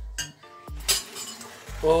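Kitchenware clinking: a few light knocks and one short ringing clink about two-thirds of a second in.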